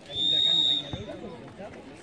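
A referee's whistle blows one short, steady, high blast to signal the kickoff.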